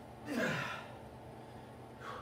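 A man's forceful, breathy exhale that falls in pitch, lasting about half a second: the strain of bending a 3/8-inch grade 2 bolt by hand.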